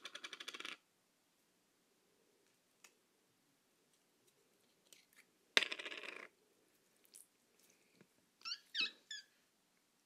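Red slime being squeezed and kneaded by hand: two short bursts of rapid crackling clicks, one at the start and one a little past halfway, and a few short squeaks that glide up and down near the end.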